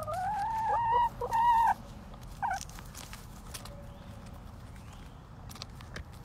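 A backyard hen giving a loud, drawn-out call in two parts, rising in pitch through the first second, followed by a short single note about two and a half seconds in.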